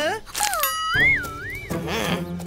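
Cartoon sound effects over background music: a sliding whistle-like tone that falls, then swoops up and down twice in a wobbling, boing-like way.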